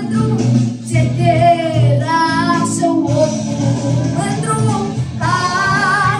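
A girl singing a Romanian song into a handheld microphone, holding long notes with a wavering vibrato, over steady instrumental accompaniment.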